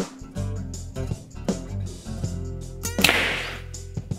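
A Prime compound bow is shot about three seconds in. There is a sudden sharp crack of the string's release, then a brief rush of noise as the arrow punches through the tuning paper into the target. Background music plays underneath.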